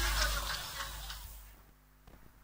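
The end of a live dance-band recording fading out: the last of the music and voices in the room die away, reaching near silence about a second and a half in.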